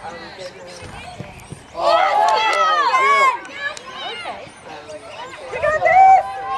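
Sideline spectators and players at an outdoor football match shouting. Several high voices overlap in drawn-out calls about two seconds in, and another long shout rises near the end as the attack reaches the goal.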